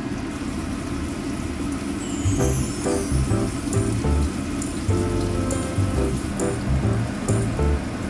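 Oil sizzling in a frying pan, with scattered sharp pops, as breaded patties shallow-fry, under background music with a steady bass beat.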